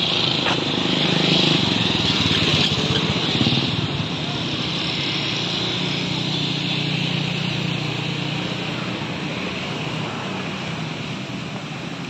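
Street traffic noise with a motorcycle engine running nearby, a steady low hum that eases slightly in the second half.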